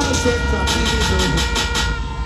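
A long, steady horn note, like a train horn sound effect, holding through over a low bass rumble from the sound system. About a second in comes a fast rattle of sharp hits, roughly eight a second.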